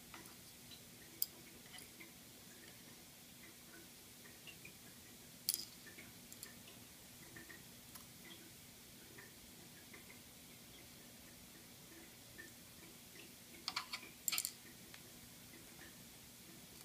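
Faint, sparse clicks and ticks of metal tweezers and dry beetle wing covers (elytra) touching each other and a wooden board, with a sharper click about five and a half seconds in and a quick cluster of clicks near the end, over a faint steady hum.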